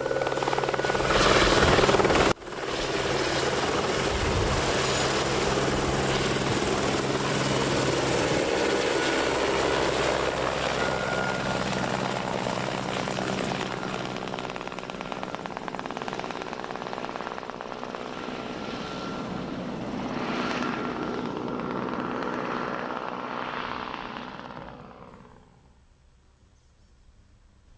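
Helicopter engine and rotor running, loud and steady with a high whine over a low drone. It breaks off sharply for an instant about two seconds in, then grows gradually fainter and fades out just before the end.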